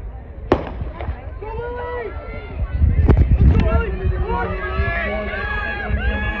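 Starter's pistol firing once about half a second in to start a sprint, followed by spectators yelling and cheering as the runners go, the shouting swelling about three seconds in.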